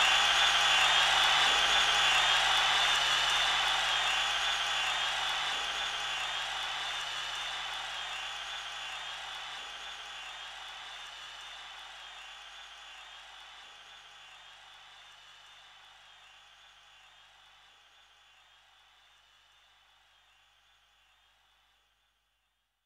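Electronic noise wash from a hardcore rave track's outro: a hiss with a slow sweeping, swirling movement, fading out steadily into nothing. A faint low drone under it drops out near the end.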